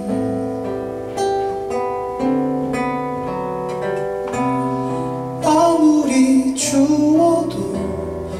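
Nylon-string classical guitar played solo, a run of single plucked notes ringing into each other. About five and a half seconds in, a man's voice comes in singing over the guitar.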